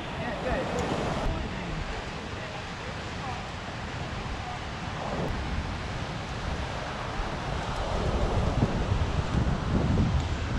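Wind buffeting the microphone over a steady rush of sea surf breaking on rocks.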